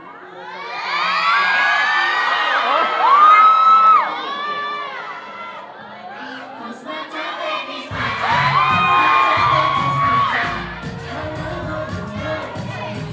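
An audience cheering and screaming in high-pitched voices, loudest in the first four seconds and rising again about eight seconds in, when a song's bass beat comes in.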